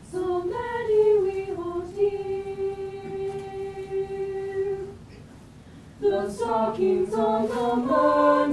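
Mixed high-school choir singing a Christmas piece without accompaniment: a phrase ending in a long held note, a brief breath about five seconds in, then the voices resume with moving notes.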